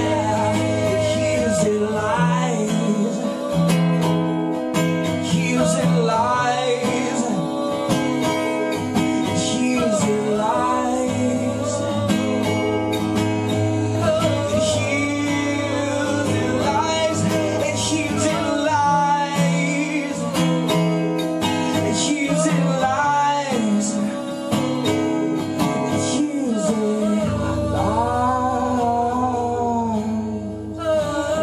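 Live acoustic performance: two acoustic guitars strummed and picked under two male voices singing in harmony, the vocal lines sliding and bending in pitch.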